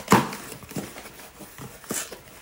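A cardboard shipping box being opened and handled by hand. A loud sharp rip or knock just after the start, then lighter rustles and taps, with another sharp one near the end.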